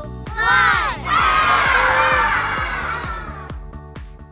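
A group of children shouting the last number of a countdown, then a long group cheer that slowly fades away, over a children's music track.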